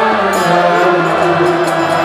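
Live kirtan: devotional chanting with sustained harmonium chords and a mridanga drum, a few sharp drum or hand-cymbal strokes standing out over the held tones.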